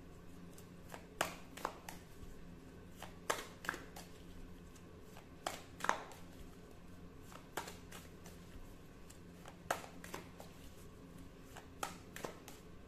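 Tarot cards being handled: about a dozen light, irregular clicks and taps over a faint steady low hum.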